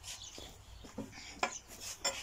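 Metal ladle scraping and clinking against a cauldron as soup is served into bowls: a few short scrapes and knocks.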